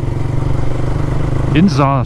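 Motorcycle engine running at a steady, even pitch under way, heard from the rider's own faired sport bike. A voice starts talking near the end.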